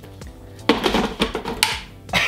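Background music, with the plastic blender jar clunking and rattling as it is set down onto the blender's motor base about two-thirds of a second in.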